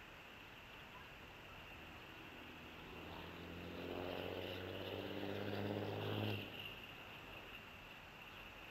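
A distant engine droning at a low, steady pitch. It swells from about two and a half seconds in and cuts off abruptly near the six-second mark.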